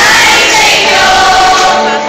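A large group of children singing together as a choir, loud and close to the microphone, holding sustained notes.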